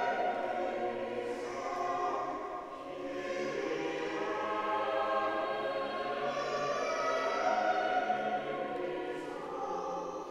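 Cathedral choir singing, many voices together in long held notes, with a brief dip in loudness about three seconds in.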